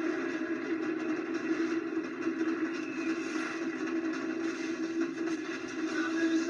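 Movie trailer soundtrack music playing through a television's speaker, with a steady held low tone.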